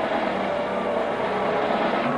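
Technics electronic keyboard holding sustained, organ-like chords, a dense steady blend of several notes with no drum strokes.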